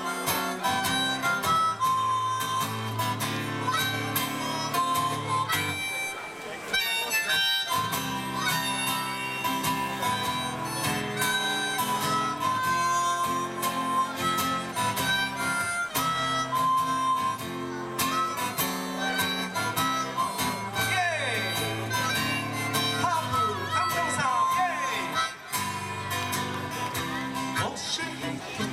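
Harmonica in a neck holder playing a solo over a strummed acoustic guitar, an instrumental passage of a live song. Held notes alternate with shorter phrases, with some bent notes in the latter part.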